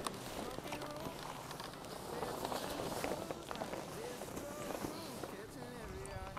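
Canvas fabric of a deflating inflatable tent rustling and shifting as it collapses and is pulled down, with faint voices in the background.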